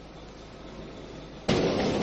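Faint hiss, then about one and a half seconds in a sudden loud rush of noise that starts at once and carries on.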